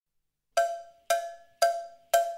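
A pitched percussion instrument struck three times, evenly, about twice a second, starting about half a second in; each strike rings out briefly. It is a count-in to the start of the song.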